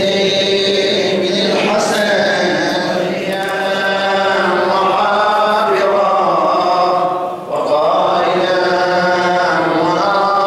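Men's voices chanting a Shia lament (nuʿi) for Imam Husayn in long, drawn-out melodic lines with gliding pitch.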